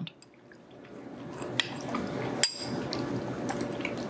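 Spoons clinking lightly against stemmed glass dessert dishes: a few sharp clicks, the loudest about two and a half seconds in with a brief glassy ring, over a soft background hiss.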